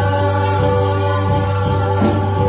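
Live gospel praise-and-worship music: several singers together over a band with keyboard, electric guitar and flute, held steady over a continuous bass.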